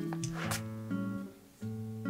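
Background music: an acoustic guitar playing plucked chords, with a short break about one and a half seconds in.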